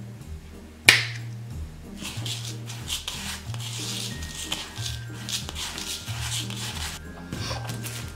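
Fingers stirring coarse Epsom salt crystals mixed with glitter in a plastic bowl, a gritty rustling over soft background music. A single sharp click about a second in.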